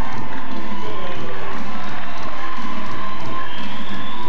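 Harari zikri devotional music performed live, with a crowd cheering over it.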